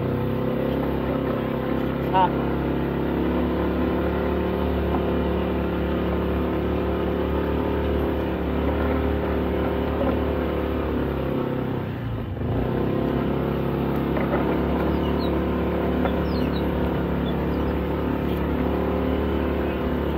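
Honda ADV160 scooter's single-cylinder engine running under steady throttle while climbing a dirt road. It eases off briefly about twelve seconds in, then picks up again.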